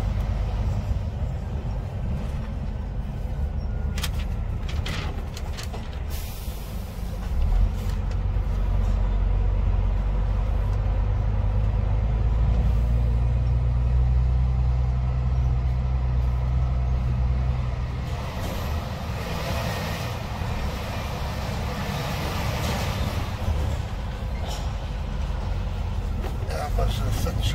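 Heavy truck's diesel engine heard from inside the cab as it drives slowly, its low rumble growing louder about a third of the way in as it pulls ahead, with a few short clicks early on and a hiss later.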